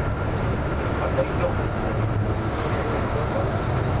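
Steady low rumble of engine and road noise heard from inside a moving road vehicle.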